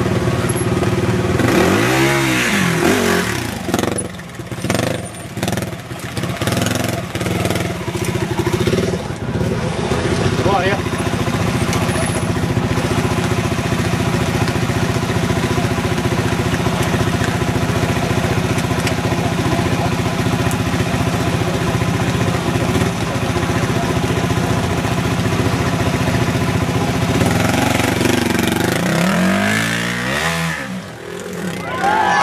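Trial motorcycle engine running steadily as the rider works through a rocky section. The revs rise and fall in a blip about two seconds in and again near the end.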